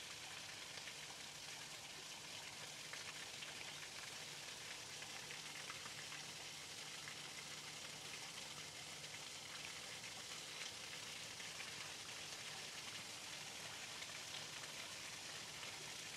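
Steady, faint, rain-like hiss of water with fine crackles through it and a low hum underneath.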